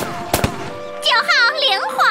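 Cartoon gunshot sound effects: a few quick sharp cracks in the first half second over background music, followed near the end by high-pitched, squeaky cartoon vocal sounds.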